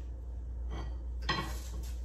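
A fork clinking and scraping against a metal sheet pan and a ceramic plate as roasted Brussels sprouts are dished up: a few soft clinks.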